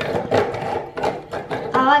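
Hand-cranked rotary pencil sharpener being turned, its knife cutters shaving the wood of a pencil in a continuous rasping grind.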